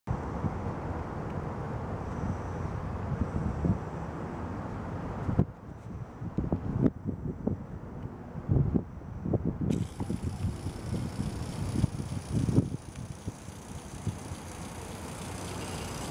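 Rumbling wind and handling noise on a handheld compact camera's built-in microphone, with irregular low bumps throughout. The higher hiss cuts out abruptly about a third of the way in and comes back after about four seconds.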